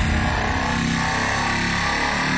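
Loud live stage music through a venue sound system, heavy bass under a dense, distorted wash with little clear melody.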